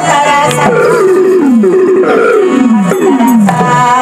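About four rough, roar-like cries, each falling steeply in pitch, one after another over continuing stage music.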